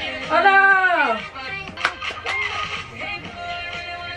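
Dance-track music from a TikTok clip, with a loud vocal sliding down in pitch about half a second in and a sharp click about two seconds in.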